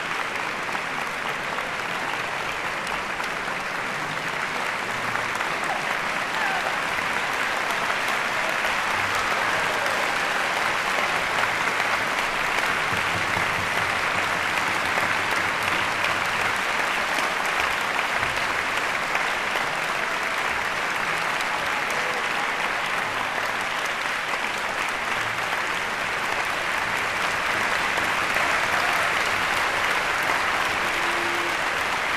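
Concert-hall audience applauding: dense, steady clapping that grows a little louder about six seconds in.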